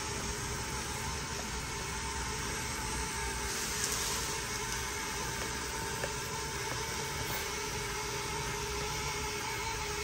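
Small electric gear motors of a homemade model straddle carrier running steadily as it drives, a steady tone over an even hiss with a few light ticks.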